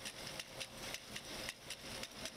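An 80-year-old knitting machine running, a steady mechanical clatter of clicks with a louder click about every half second.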